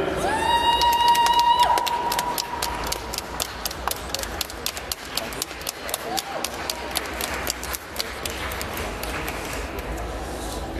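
A spectator's long, high-pitched shout held for about two and a half seconds, with hand claps from the crowd, several a second and uneven, running on until near the end.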